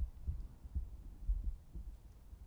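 Footsteps on a carpeted floor, heard as a series of soft, low, irregular thuds through a clip-on microphone worn by the walker.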